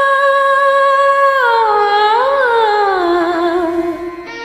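A woman humming a wordless melody over a quiet karaoke backing track: one long held note, then a dip and a small rise, gliding down to a lower note held until near the end.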